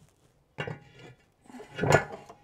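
Metal saj pan being set down on the wood stove's metal top: a clank about half a second in, then a longer scrape and clunk near the end as it is settled into place, with a brief metallic ring.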